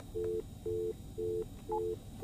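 Desk telephone's speaker sounding a busy tone after the other party has hung up: a steady two-tone beep repeating about twice a second. A short higher beep comes near the end.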